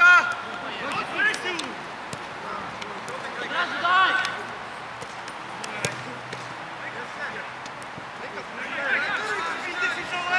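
Football players shouting and calling to each other, with a few sharp thuds of the ball being kicked. The loudest shout comes right at the start, with another about four seconds in and more near the end.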